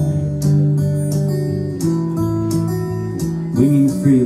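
Acoustic guitar strummed live, chords ringing between strokes that come about every half second or so. A voice comes in near the end.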